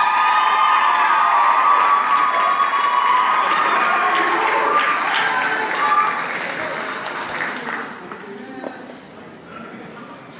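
Audience applauding and cheering, with drawn-out whoops over the first few seconds. The applause fades away through the second half.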